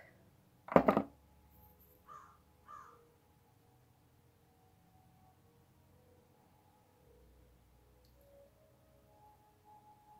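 Crow cawing: one short, loud, harsh caw about a second in, then two faint caws about half a second apart.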